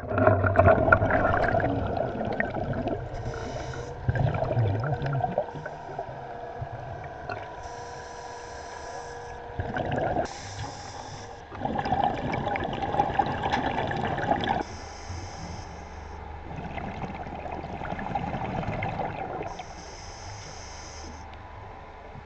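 Underwater diver's breathing gear: a short hiss on each inhale alternates with a longer rush of exhaled bubbles, a cycle of about four to five seconds, heard muffled through the water.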